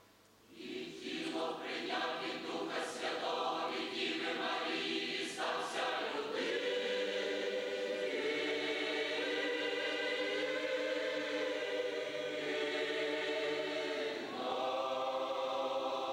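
Large mixed choir of men's and women's voices singing a Christian hymn. The singing begins after a brief pause about half a second in, holds one long chord through the middle and starts a new phrase near the end.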